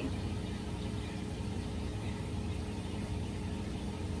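Steady low mechanical hum with a few faint steady tones above it, from running aquarium equipment.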